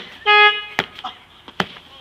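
Blows landing on a man lying on a tiled floor: sharp smacks about every 0.8 seconds. A short, steady horn toot sounds near the start and is the loudest thing.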